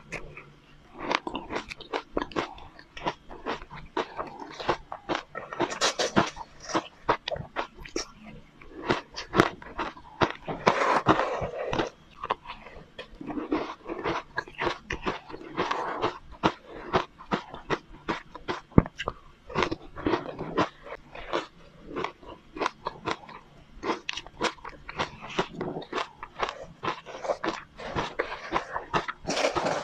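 Close-miked crunching and chewing of crushed, powdery frozen ice coated in matcha powder: a rapid, irregular run of crisp crunches with bursts of denser chewing.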